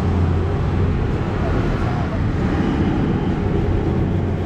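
A motor vehicle engine running steadily with a low, even rumble.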